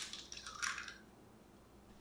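An egg cracked against the rim of a glass mixing bowl: one sharp crack right at the start, then a short soft wet squish about half a second later as the shell is pulled open and the egg drops in.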